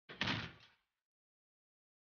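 A single sharp slam with a short noisy tail that dies away within a second.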